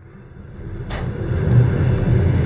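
Running noise of a moving passenger train heard from inside the carriage: a low rumble that cuts out abruptly at the start and builds back up over the first second and a half, with a single sharp knock about a second in.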